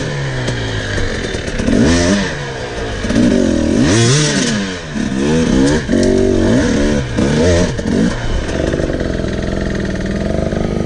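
Husqvarna enduro dirt bike engine revving up and down in short repeated bursts as the throttle is worked over rocky ground, settling to a steadier run near the end, with clatter and knocks mixed in.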